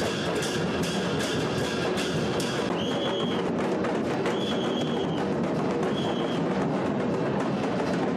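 A group of large barrel drums beaten hard and fast with sticks, a dense driving rhythm of many strikes a second. A short high held tone sounds three times over the drumming in the middle.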